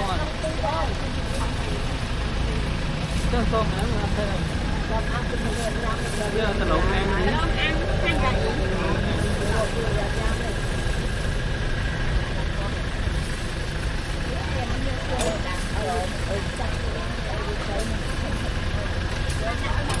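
Indistinct voices talking over a steady low engine-like rumble.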